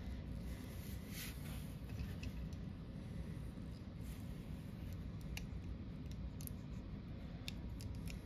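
Faint, irregular small clicks and taps of plastic toy-robot parts being handled and pressed onto pegs, over a steady low background noise.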